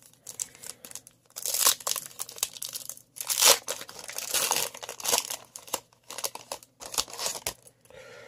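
A baseball card pack being torn open by hand, its wrapper crinkling and tearing in an irregular run of bursts, loudest about three and a half seconds in.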